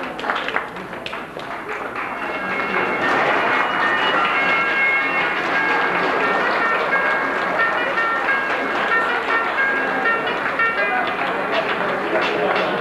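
Audience applause and crowd noise with music playing over it, swelling about two seconds in; the music's melody notes come through above the clapping.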